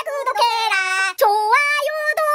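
A woman's high, sing-song voice singing a little chant in Korean, 'subscribe, subscribe… and like it too', in drawn-out held notes.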